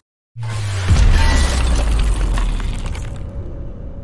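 Outro logo sting sound effect: after a moment of silence, a sudden noisy crash hits, with a deep boom joining about a second in, then everything rings out and fades over the following seconds.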